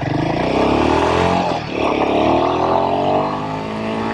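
Royal Enfield Himalayan 452's single-cylinder engine on its stock exhaust accelerating through the gears: the revs climb, drop briefly at an upshift about a second and a half in, then climb again and level off near the end.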